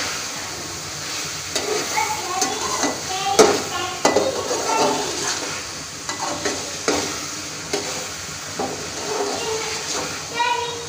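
A slotted metal spatula scraping and knocking against an aluminium pot as peas and potatoes are stirred and fried in masala, with a steady sizzle of frying underneath. The scrapes and knocks come irregularly, several times a second at most.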